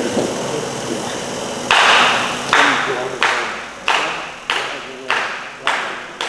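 A small crowd clapping in unison, a steady beat of about three claps every two seconds that starts about two seconds in.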